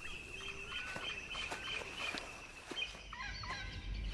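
Faint forest ambience of birds calling: short whistles and chirps over a steady, high pulsing trill, with a louder call a little after three seconds in.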